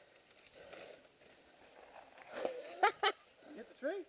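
A man's voice calling out without clear words: a drawn-out call starting a little past two seconds in, ending in two short, sharp cries.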